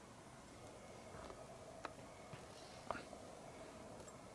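Near silence: faint background hiss with a steady low hum, broken by a couple of soft clicks about two and three seconds in.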